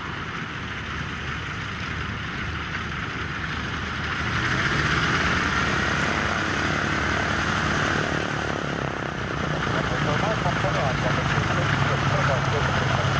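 Douglas DC-3's twin radial piston engines running at low taxi power as the aircraft taxis closer, growing louder about four seconds in, dipping briefly and swelling again near the end.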